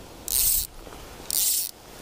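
Ratchet of a budget Paladin fly reel buzzing as fly line is pulled off it, twice, each pull under half a second and about a second apart.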